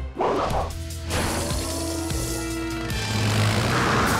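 Cartoon sound effects over action background music: a short whoosh just after the start, then a rushing swoosh of cartoon rescue vehicles driving that swells near the end.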